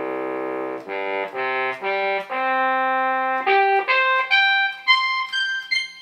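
Synthesized trumpet sound from a Roland SC-55 tone generator, played from a DIY electronic valve instrument (a MIDI wind controller with trumpet fingering). It runs through about ten held notes that climb step by step from the very bottom of its six-octave range to very high notes, the first note the longest.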